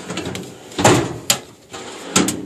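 A steel Craftsman tool-cabinet drawer being pulled open on its slides, with a louder metallic rattle about a second in and a sharp clink just after.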